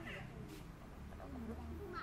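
Short high-pitched calls of a pigtail macaque, one right at the start and another near the end, over background voices.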